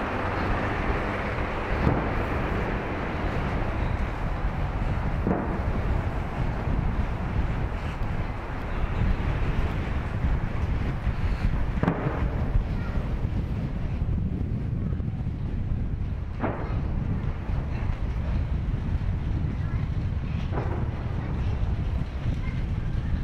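Wind buffeting the microphone over a steady low outdoor city rumble, with a few faint knocks scattered through.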